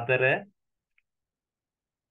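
A voice speaking for the first half second, then silence broken only by a single faint click about a second in.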